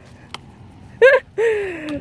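A short high-pitched vocal squeal about a second in, followed by a drawn-out exclamation that falls in pitch, amid excited laughter.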